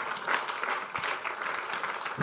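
Congregation applauding: many people clapping at once, a steady spread of hand claps.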